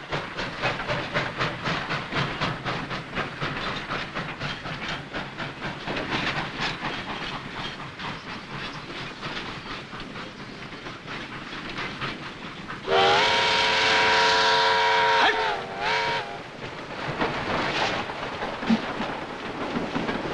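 Steam locomotive working with rapid, even exhaust chuffs. About 13 seconds in, its steam whistle sounds one loud multi-tone blast of about two and a half seconds, then a short second toot, and the chuffing carries on more faintly.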